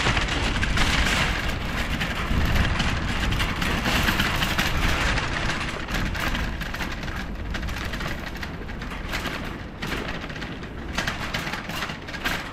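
Wire shopping cart being pushed, its wheels rolling and the metal basket clattering in a continuous rattle with a low rumble. It is louder over the asphalt and eases off a little from about halfway, once the cart is on smooth tiles.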